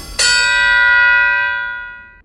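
A bell-like chime of a logo sting, struck once just after the start, ringing with several steady tones and slowly fading away.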